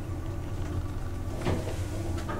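Low steady hum inside a small passenger elevator car, with a soft knock about one and a half seconds in.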